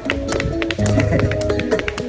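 Guitar and cajon playing the closing instrumental bars of a slow pop ballad: held guitar chords over steady sharp cajon slaps, with no voice.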